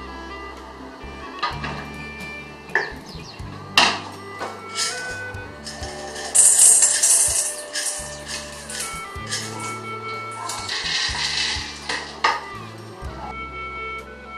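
Rock sugar rattling and clinking as it is scooped from a glass jar with a metal spoon and tipped into a metal pot, with two longer rattling pours about halfway through and near the end. Background music plays throughout.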